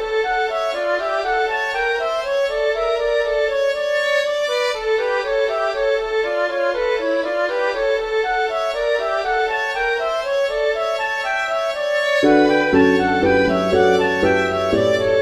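Celtic-style orchestral music: a high melody in quick, even notes, with lower parts coming in about twelve seconds in.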